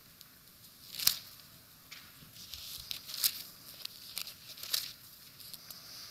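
Thin Bible pages being flipped and turned by hand: a few quick paper rustles, the loudest about a second in.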